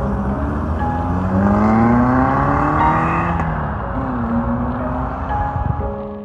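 Peugeot 205 GTi's 1.6-litre four-cylinder engine accelerating hard past on the road. Its note climbs, drops about three and a half seconds in, then climbs again, in the manner of an upshift. Background music plays underneath.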